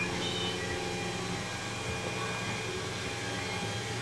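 A steady low mechanical hum with faint hiss, unchanging throughout.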